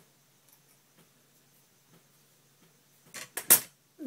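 Faint, scattered clicks of hand scissors snipping through straightened hair. Near the end comes a short, loud burst of rustling noise.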